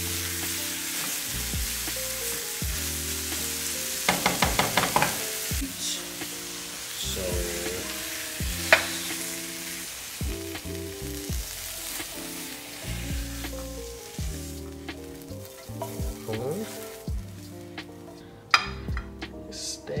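Broccoli and cauliflower sizzling in a skillet as they are stirred, with a quick run of clicks from the utensil about four seconds in. The sizzle thins out in the second half, leaving scattered knocks as the vegetables are tipped onto a plate, over background music.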